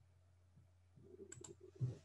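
Two sharp clicks in quick succession a little past halfway, from a computer mouse or key as the slide is advanced, followed by soft low rustling and a dull thump near the end. A faint steady low hum sits underneath.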